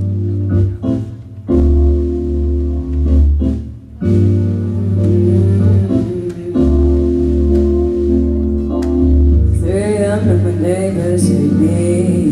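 Live band of electronic keyboards and a drum kit playing held, organ-like chords over a deep bass, with occasional drum hits. A sung voice comes in near the end.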